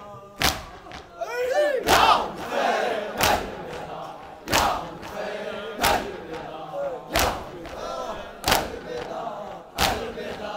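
A crowd of mourners doing matam: hands strike chests together in a slow, even beat, about one strike every 1.3 seconds, with many men's voices chanting between the strikes.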